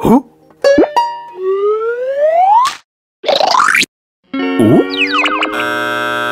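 Cartoon sound effects: quick falling boings and plops, then a long rising whistle-like glide and a brief swoosh. Near the end comes another run of gliding tones, and then a held music chord.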